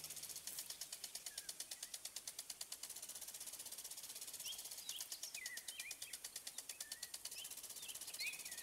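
Faint outdoor ambience: a fast, even high ticking, about eight pulses a second, with small birds chirping in short rising and falling notes from about halfway.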